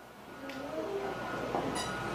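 Low room noise of a hall between words: a steady hum under faint background voices, with a brief high-pitched sound near the end.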